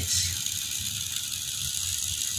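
Homemade miniature toy tractor's small motor and gear drive whirring steadily as it drives along.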